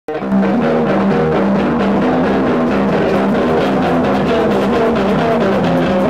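A live noise-rock band playing loudly, with drums and electric guitar. The sound cuts in abruptly and keeps a dense, churning texture of shifting notes over steady drumming.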